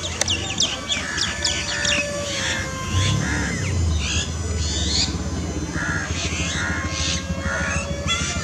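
Birds chirping and calling in quick, repeated bursts, over a low steady hum that grows from about three seconds in.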